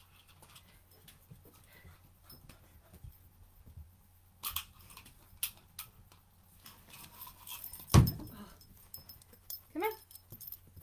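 A puppy barks once, loudly, about eight seconds in, and gives a short rising yelp near the end. Light scattered clicks and taps of play run through the rest.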